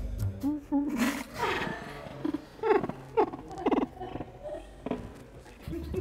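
A person with a mouthful of crackers trying to whistle a national anthem: instead of clean whistled notes come a string of short, wavering, muffled vocal noises with spluttering clicks. Background music with a beat falls away at the start and comes back near the end.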